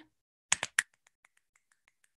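Fingers snapping: a quick run of three sharp snaps about half a second in, then a string of much fainter ticks.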